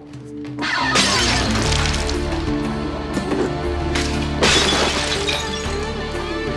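Glass and household objects smashing, two crashes about a second in and at about four and a half seconds, over background music.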